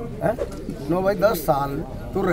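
A man speaking in Hindi into the microphones.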